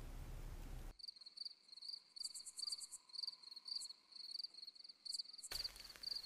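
Crickets chirping in a steady run of quick repeated pulses, a night ambience, after a short burst of hiss in the first second; a rush of noise comes in near the end.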